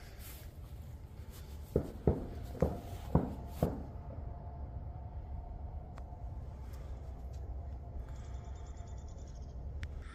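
Five sharp bangs in quick succession, about half a second apart, starting nearly two seconds in; they sound like gunshots. A steady low rumble runs underneath.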